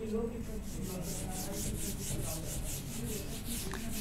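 A whiteboard being wiped clean by hand: quick, even back-and-forth rubbing strokes as writing is erased.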